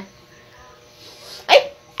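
After a quiet stretch, a single short, sharp vocal cry of "ay" falling in pitch, about one and a half seconds in.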